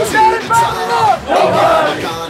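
A team of football players in a huddle shouting together, about three long yells in a row.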